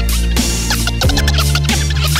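Hip-hop beat with a heavy bass line and a DJ scratching vinyl on turntables over it: short, quick back-and-forth cuts, several a second.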